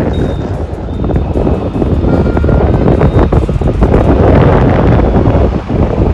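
Heavy wind buffeting on a phone microphone while riding along a road, over the running noise of the vehicle and passing traffic.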